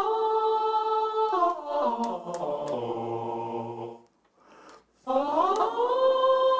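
Synthesized choir voices from a virtual-instrument plugin, played live from an Odisei Travel Sax MIDI wind controller. A held note gives way to a run of notes stepping downward. After a break of about a second, a new note slides up into a held pitch near the end.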